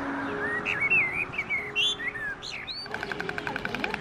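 Songbirds chirping: a string of short whistled notes that slide up and down in pitch. From about three seconds in, a fast, even pulsing rhythm takes over.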